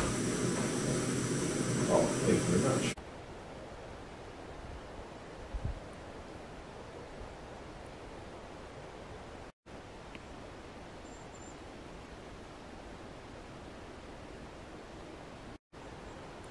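Steady hiss of a gas canister stove burning under a pot, with voices over it; after about three seconds it cuts off abruptly to a faint, steady outdoor background hiss with one soft thump.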